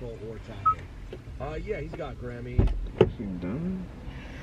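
A faint, indistinct voice in a car cabin, with two sharp knocks less than half a second apart in the second half.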